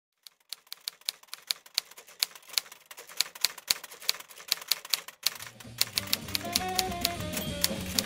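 Typewriter keys clacking, about four strokes a second. About five and a half seconds in, music with bass notes comes in under the typing.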